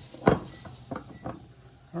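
Glass knocking on glass as the parts of a three-piece glass apothecary jar are handled and the top is fitted back on: one sharp knock about a quarter second in, then a few lighter clicks.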